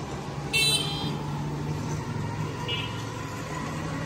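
Street traffic: a short, high-pitched vehicle horn toot about half a second in and a briefer, fainter one a couple of seconds later, over a steady low engine hum.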